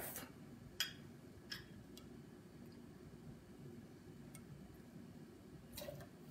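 A few light clicks of a stainless steel jigger and a glass liqueur bottle against a steel cocktail shaker while a measure is poured, the loudest about a second in, over quiet room tone.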